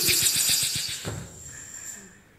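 Sound effect in a theatre piece's soundtrack: a loud hissing rush with a fast rattle, a low drum-like boom about a second in, then fading away.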